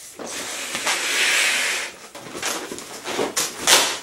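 A latex modelling balloon blown up by mouth: a rush of breath for about two seconds, then a run of short latex squeaks and rubs as the inflated balloon is handled.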